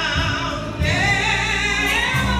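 A woman singing a gospel solo into a microphone, holding notes with vibrato, over a steady low instrumental accompaniment; a new sung phrase starts just before the middle.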